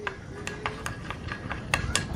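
Chopsticks stirring sauce in a glass bowl, tapping and clinking against the glass in a run of light clicks that come quicker toward the end.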